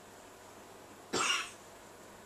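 A person coughs once, briefly, a little over a second in.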